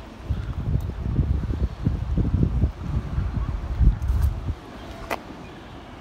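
Wind buffeting the microphone in irregular gusts, easing off about four and a half seconds in.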